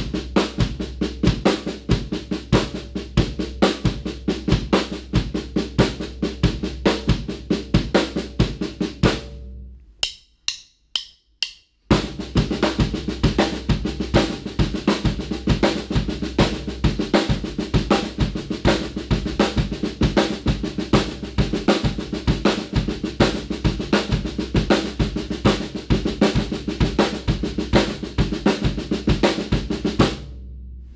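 Drum kit: a five-stroke sticking on the snare drum played as eighth-note triplets over steady quarter notes on the bass drum, at a slow tempo. About nine seconds in the playing stops, four light clicks follow, and the pattern starts again at a faster tempo.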